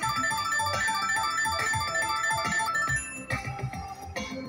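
Ultimate Fire Link slot machine's electronic chime jingle, a quick run of short bright notes, playing as the bonus win total counts up. The run of notes stops a little over three seconds in.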